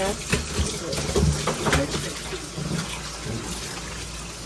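Water running from a faucet into a utility sink, with splashing as a large long-haired dog is washed and rinsed in it.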